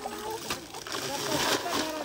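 Several people talking, with a short burst of hissing noise a little after a second in.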